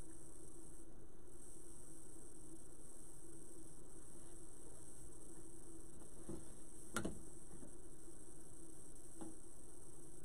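Steady low electrical hum of room tone, with a few light clicks and taps of materials being handled, the sharpest about seven seconds in.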